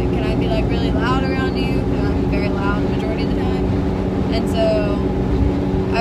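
Car cabin noise while driving: a steady low engine and road hum inside the car, under a woman talking.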